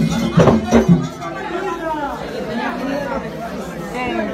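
Drumming ends with a couple of last strikes about a second in, then a crowd of people talking and calling out over one another.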